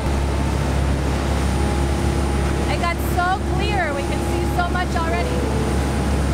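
Tour boat under way at speed: a steady low rumble of the engines with the rush of wind and churning wake water. About halfway through, a voice calls out briefly with a rising and falling pitch.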